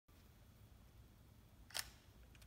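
Near silence: room tone, broken by a single short, sharp click near the end.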